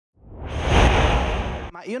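A whoosh sound effect: a rush of noise that swells up over about a second and cuts off suddenly. A man's voice begins speaking just after it.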